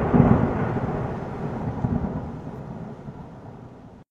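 A loud rumbling boom, used as a title-card sound effect, that dies away slowly over the few seconds and is cut off abruptly near the end.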